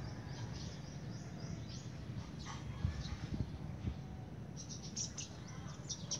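Small birds chirping in quick, short calls, clustering thickly near the end, over a steady low background rumble.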